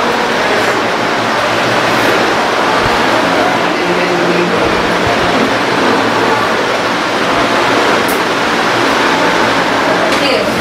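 Steady, loud background noise of a busy room, with faint indistinct voices under it.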